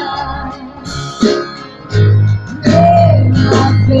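Live worship band playing a slow Spanish-language worship song: acoustic guitar, keyboard and drums under women singing through a PA. A deep bass note swells in about halfway through.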